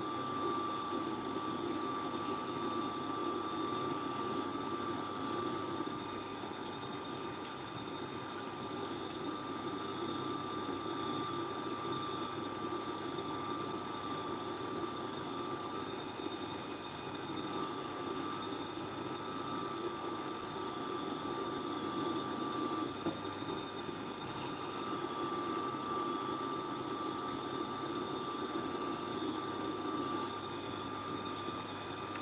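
Tormek sharpening machine running steadily, its motor and wheel giving a constant hum with a thin high whine, while a knife held in the jig is ground along the wheel. A high grinding hiss from the blade on the wheel drops out briefly a few times as the blade is moved.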